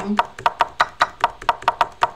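Rapid, even clicking of computer keys, about seven clicks a second, as on a keyboard being typed on fast.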